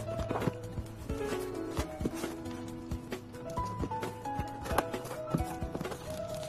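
Background music: a melody of held notes stepping up and down over a steady low drone, with frequent sharp knocking clicks.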